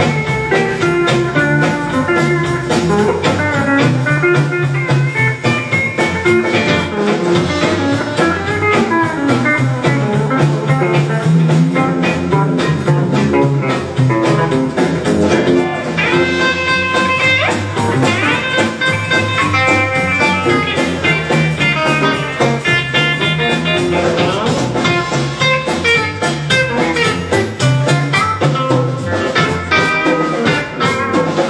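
Live country band playing an instrumental break: Telecaster-style electric guitar, upright bass, pedal steel guitar and drums keeping a steady swing rhythm. Past the halfway mark a higher lead line with sliding notes comes to the front.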